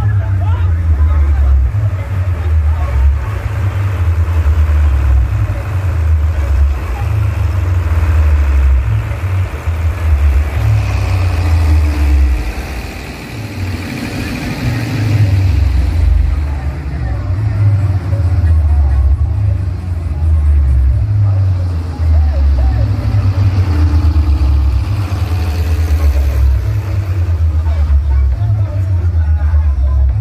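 Loud DJ music from a stacked-speaker box sound system, dominated by deep bass notes that step up and down in a repeating pattern, with voices over it. The music dips briefly about halfway through.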